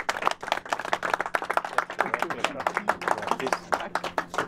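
A small seated audience applauding: many quick, irregular hand claps throughout.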